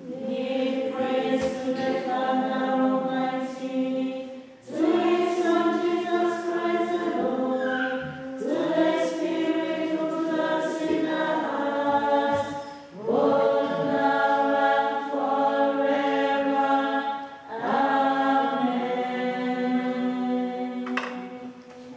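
Women's choir singing a hymn or chant in long held phrases, about four seconds each, with short breaks between.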